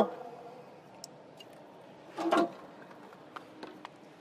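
Faint clicks and one short muffled clunk a little over two seconds in, from a forklift's removable floor plate and throttle pedal connector being handled.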